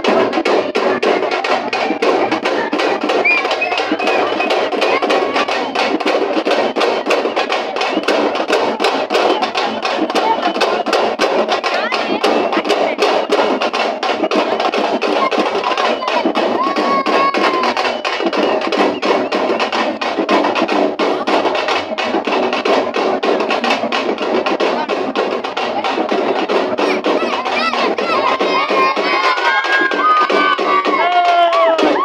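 Music with fast, dense drumming, over the noise of a street crowd.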